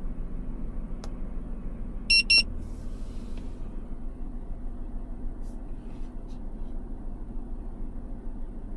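Two short, high beeps close together, about two seconds in, from the Toyota Tundra's integrated dashcam as its button is held down. A steady low hum from the truck cabin runs underneath.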